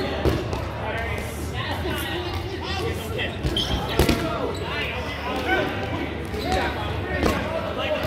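Rubber dodgeballs being thrown and smacking on a wooden gym floor, the loudest smack about halfway through, with players' shouts and chatter throughout.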